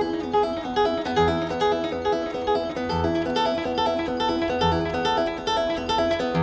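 Solo nylon-string classical guitar played fingerstyle: a flowing arpeggiated pattern over a bass note that returns about every two seconds.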